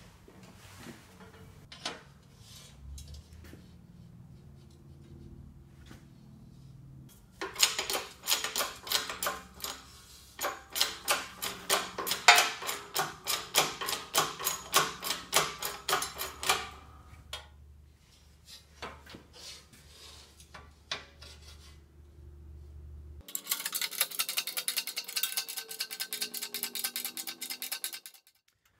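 Background music: a low steady bed, with a fast, even beat through the middle and a change to a brighter section about three-quarters of the way through.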